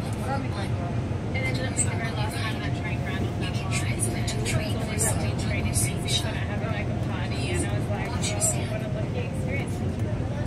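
Korail Line 1 electric commuter train running, heard inside the carriage: a steady rumble from the wheels and track, with a steady tone through the middle, and people talking over it.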